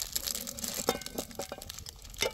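Crinkling and small irregular clicks of a yellow plastic-wrapped packet being handled and worked open by hand.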